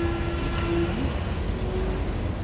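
Wet-street traffic ambience: a steady low rumble with a hiss over it, and a single held tone that stops just under a second in.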